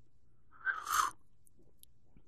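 A person sipping a cocktail from a glass: one short slurp lasting about half a second, a little over half a second in.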